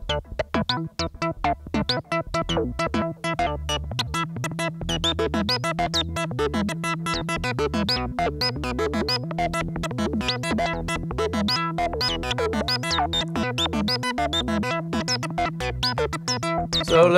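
Eurorack modular synthesizer playing a fast 16-step sequence of short plucked notes. It is driven by Doepfer A-155 analog/trigger sequencers under an A-154 sequencer controller, with random modulation and a clock divider changing the pattern. A steady low bass part comes in about three seconds in.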